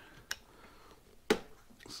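Two sharp clicks from a screwdriver and the generator's plastic housing being handled: a light one about a third of a second in and a louder one a little past the middle.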